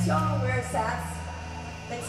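Steady low hum and buzz from the band's stage amplifiers, loudest in the first half second and then dropping. A voice talks over the PA above it.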